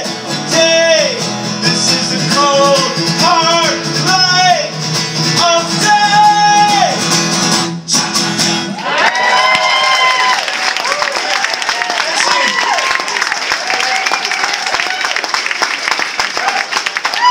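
Strummed acoustic guitar with a man singing the song's final lines, the music cutting off suddenly about eight seconds in. An audience then applauds and cheers.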